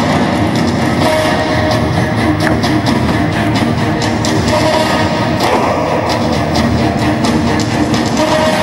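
Loud rock-style music with guitar and a steady beat.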